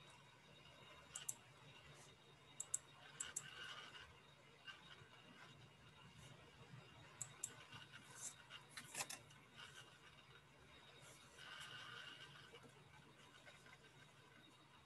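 Near silence on a video call, broken by scattered sharp clicks at a computer, singly and in quick pairs, with a cluster about eight to nine seconds in.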